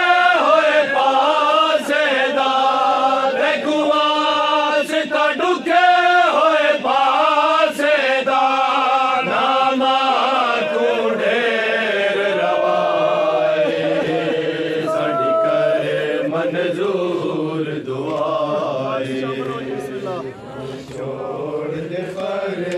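A group of men chanting a noha, a Shia lament, in unison around a microphone, holding long drawn-out notes. The singing grows quieter and thinner near the end.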